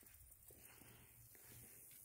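Near silence: faint background noise with a low steady hum.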